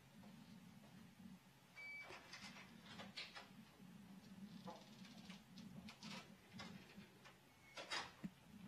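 Near silence: a faint steady low hum with a few faint, brief clicks.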